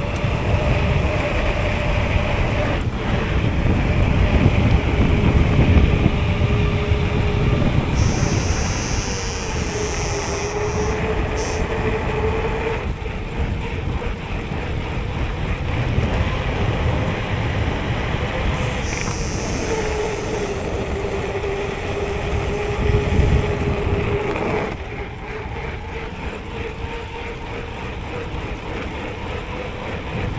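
Mountain bike rolling fast down an asphalt road: wind rushing over the microphone and the knobby tyres humming on the tarmac, the hum dipping in pitch twice as the bike slows. A brief high squeal comes about eight seconds in and again near twenty seconds, and the noise drops about twenty-five seconds in.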